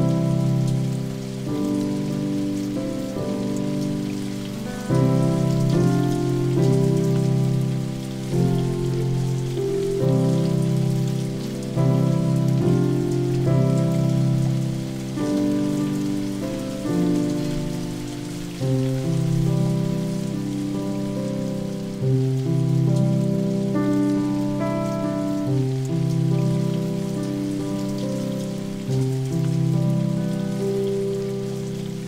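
Solo piano playing slow chords, a new chord struck every second or two, over the steady hiss of falling rain.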